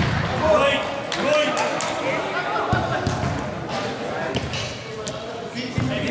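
Football kicks and ball thuds on an indoor artificial-turf pitch, echoing in a large hall, over shouting players and spectators' voices.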